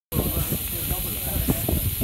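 Steam hissing steadily from a miniature live-steam locomotive as it is raised in steam, with voices in the background.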